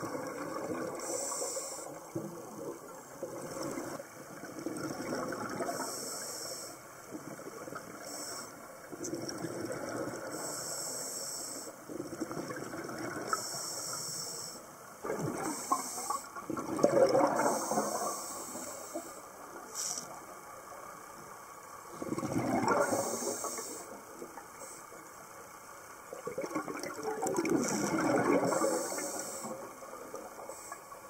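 Scuba breathing through a regulator, heard underwater: a hiss with each inhalation every few seconds, alternating with bursts of exhaled bubbles gurgling past the microphone, loudest three times in the second half.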